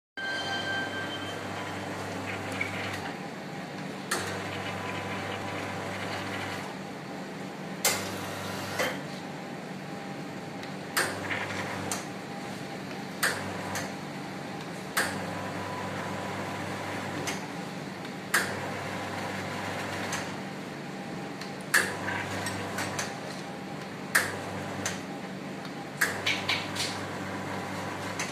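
Astoria Perla espresso machine's pump humming in a series of short spells as the dosing keypads are pressed, each start marked by a sharp click of the switch and valve.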